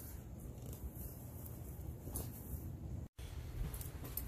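Faint steady low background rumble with a light tick about two seconds in. The sound cuts out completely for an instant just after three seconds, then a quieter background follows.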